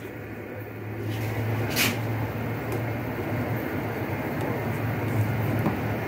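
Electric heat gun running: a steady blowing noise from its fan motor with a low hum.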